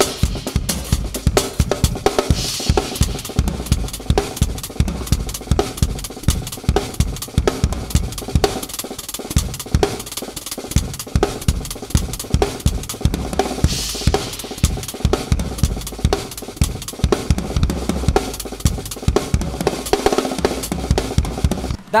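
Acoustic drum kit solo: fast, dense grooves on bass drum, snare and hi-hat, with cymbal crashes about two and a half seconds in and again around fourteen seconds.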